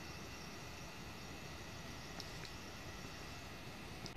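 Faint, steady outdoor background noise, a low hiss and rumble, with a couple of faint ticks about two seconds in.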